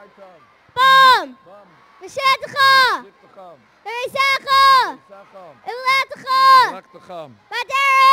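A boy's voice over a public-address system, shouting a Hebrew verse into the microphone word by word, with about five loud words separated by short pauses.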